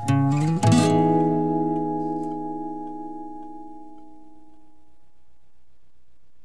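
Guitar music ending on a final chord, struck just under a second in, that rings on and slowly fades away over about four seconds.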